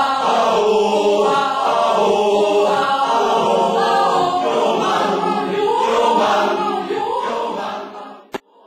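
A mixed choir of women's and men's voices singing together in several parts, the sound dying away near the end.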